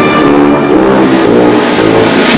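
Brass-and-percussion band playing a slow sacred procession march, with the low brass carrying sustained low notes that shift in pitch.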